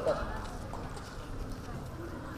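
A pause between phrases of a man's speech over a public-address microphone outdoors: faint background noise with no distinct event, and a weak trail of the last word just at the start.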